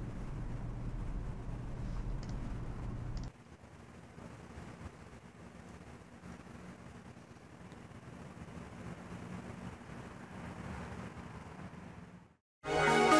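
Faint, steady low rumble of background noise, which drops suddenly to a quieter level about three seconds in.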